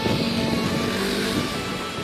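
Background music with a motor vehicle passing by, its noise swelling and fading around the middle.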